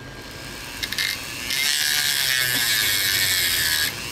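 Dremel rotary tool spinning up and grinding into the hard plastic of an HP 48SX calculator's battery compartment, a loud steady high grinding hiss from about a second and a half in that stops just before the end. It is cutting away the case's plastic rivets.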